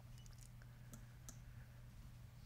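Near silence: room tone with a steady low hum and a few faint, short clicks.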